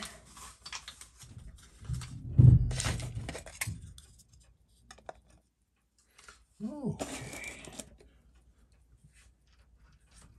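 A clear dust dome being handled and set down over a watch movement on a timegrapher stand: rustling and clatter, with a thump about two and a half seconds in. A short voiced sound follows near the seven-second mark.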